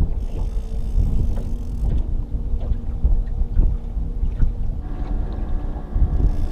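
Wind buffeting the microphone with a steady low rumble. From about five seconds in, an approaching boat's outboard motor adds a steady hum.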